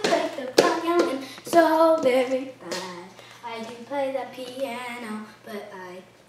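A young girl singing a made-up tune in short held notes, with four sharp claps in the first three seconds.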